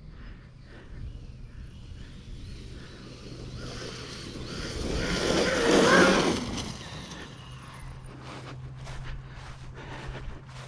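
Traxxas Maxx V2 RC monster truck with a Castle 1520 1650kv brushless motor on 6S running through grass. Its wavering motor whine and tyre noise swell to a peak about six seconds in, then fade, over a low steady hum.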